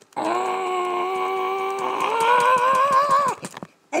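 A person's voice holding one long wordless note for about three seconds, stepping up in pitch about halfway and dropping off at the end, over light clicks of laptop keys being pressed.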